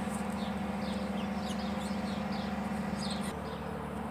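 Small birds chirping over a steady low drone of distant machinery, the drone easing slightly near the end.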